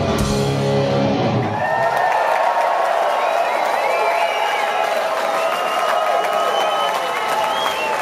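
A live punk rock band's last chord rings out and stops about a second and a half in, and the crowd cheers and yells after it.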